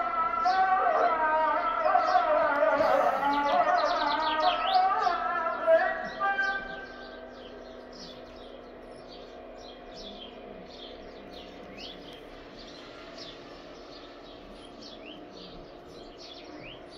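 A solo voice singing one long, ornamented, wavering phrase, which stops about six and a half seconds in. Birds chirp throughout and are left alone, quieter, once the voice stops.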